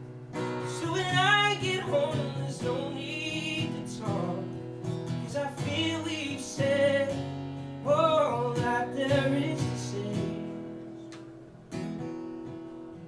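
Man singing live, accompanying himself on a strummed acoustic guitar. The voice drops out about nine and a half seconds in, leaving the guitar chords ringing and fading.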